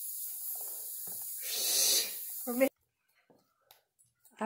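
A loud breathy exhale about one and a half seconds in, followed by a brief vocal sound. The sound then cuts off suddenly to silence.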